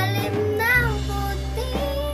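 A girl singing a ballad over an instrumental backing track, with one held note that wavers in pitch a little way in.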